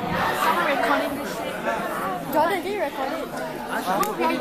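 Indistinct chatter of many voices in a large hall, with overlapping talk and a murmur but no clear words.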